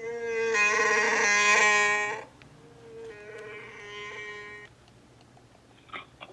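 Smartphone ringing with an incoming call: a steady held ringtone note for about two seconds, then after a short gap a second, quieter ring.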